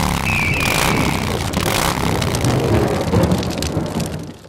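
Intro sound effect for an animated title card: a loud, dense rumble full of crackles, with a thin whistle about a second in, starting to die away near the end.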